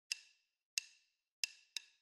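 Four sharp wood-block clicks in a rhythm with dead silence between them. The first three are evenly spaced and the last comes quicker, a count-in to a music track.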